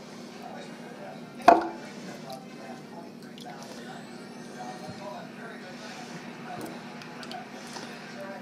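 Kitchen handling noises: one sharp knock about a second and a half in, then faint small clinks and scrapes over a low steady hum.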